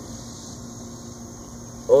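A steady low hum under faint, even background noise; no distinct event.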